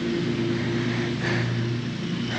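An engine running steadily at a constant speed, a low hum that keeps one pitch.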